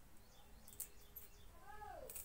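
Faint snaps and rustles of moringa leaves being stripped from their stems by hand, and near the end a short animal call that rises and then falls in pitch.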